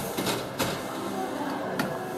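Faint background voices, with two sharp clicks: one about half a second in and one near the end.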